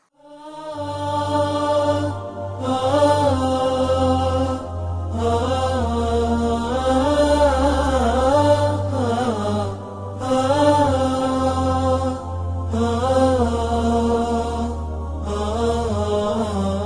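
A melodic solo vocal chant, a voice bending in pitch in phrases a few seconds long with short breaks between them, over a steady low drone.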